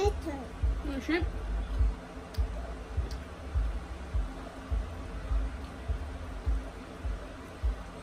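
A small child's brief high vocal sounds in the first second or so. Throughout there are irregular low thuds, with a few faint clicks as sauce-covered shrimp is peeled by hand.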